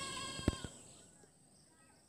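A short, high animal call, slightly falling in pitch, in the first half-second, with two soft knocks about half a second in. After that it is quiet apart from a few faint chirps.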